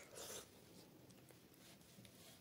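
A short, soft, wet swish near the start as a handful of dal and rice is eaten by hand, then near quiet.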